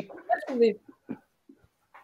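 A person's short murmured 'mmh'-like vocal sounds over a video-call link, with pitch falling, then quiet broken by a couple of faint clicks.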